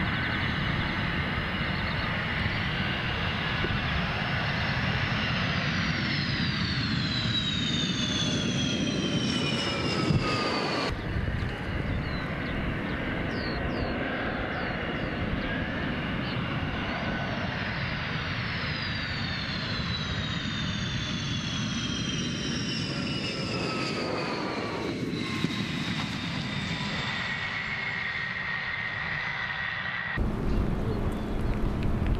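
Twin-engine Sukhoi Su-35 jet fighter passing low on landing approach: a steady jet rumble with a high whine that falls in pitch as it goes by. This happens twice, with an abrupt cut between the two passes about eleven seconds in.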